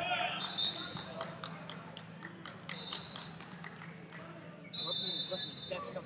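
Basketballs bouncing irregularly on a gym floor in a large hall, with high rubber-sole squeaks of sneakers on the court about half a second in, around three seconds and near the end, and background voices.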